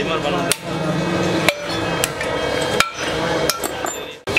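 Hand hammer striking a chisel or punch on a cracked six-cylinder Hino truck cylinder head during a pinning crack repair: sharp metallic blows roughly once a second, four hard ones with lighter taps between, over a steady low hum.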